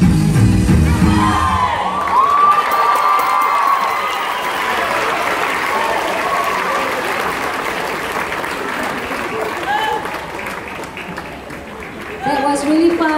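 Dance music cutting off about a second and a half in, followed by an audience applauding and cheering with whoops and shouts, slowly dying down toward the end.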